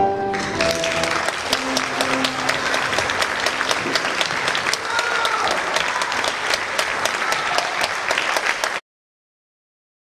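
The last chord of a tenor-and-piano performance dies away and an audience breaks into steady applause about half a second in. The sound cuts off suddenly near the end.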